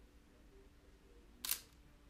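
A single camera shutter click about one and a half seconds in, over a faint steady hum.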